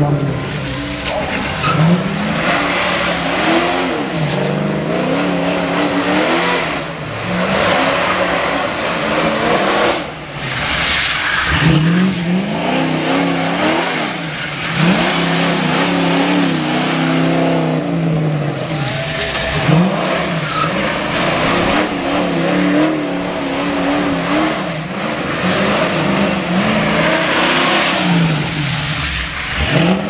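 A 640-horsepower stunt car doing donuts on wet pavement: its engine revs up and falls back over and over while the tyres squeal and skid.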